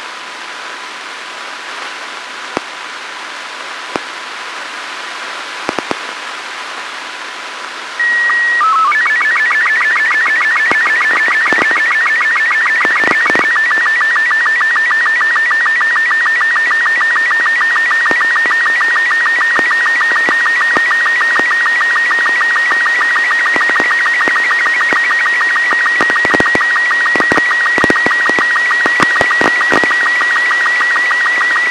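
Amateur radio satellite downlink from ARISSAT-1: receiver hiss with occasional crackles, then about 8 seconds in an SSTV picture transmission starts, much louder. A short steady high leader tone and a brief coded header give way to the fast, warbling Robot 36 image signal, a rapidly chirping tone with a regular line-sync beat.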